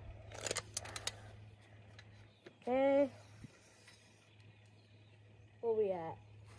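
Sharp clicks and a metallic rattle from a tape measure being handled and its blade pulled out, in the first second. A short hummed voice sound follows about three seconds in and another near the end, over a low steady hum.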